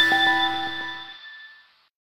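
Closing notes of a short electronic logo jingle: bright chime notes over a held chord, ringing out and fading away to silence about a second and a half in.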